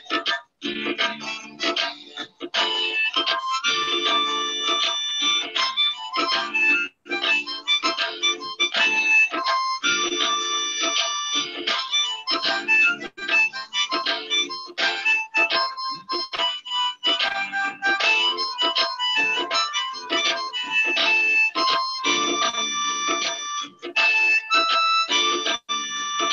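Harmonica playing an instrumental melody, mixing held chords with runs of quick notes, over a recorded backing track, heard through a video-call link.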